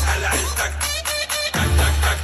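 Live concert pop music played loud over a stage PA and heard from within the crowd. A heavy bass beat drops out about half a second in, leaving sharp hits and a higher melody line, and comes back in about a second and a half in.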